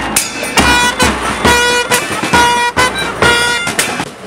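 Loud horn notes of one steady pitch, sounded about five times at a regular beat, each held for about half a second, over drumming.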